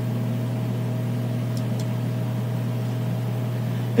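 Steady low hum with an even hiss, the background noise under the narration's recording, with two faint ticks about a second and a half in.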